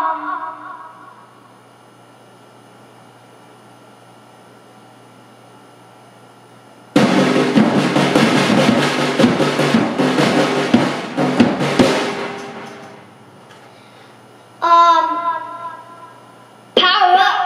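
A drum kit: after several seconds of quiet room tone, a sudden fast burst of drum hits with cymbals starts about halfway through. It lasts about five seconds, then the cymbals ring away.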